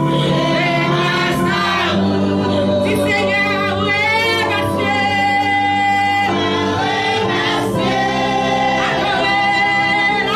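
Gospel praise singing: a woman leads into a microphone with a group of backing singers joining in, the voices sliding and holding long notes over steady sustained tones.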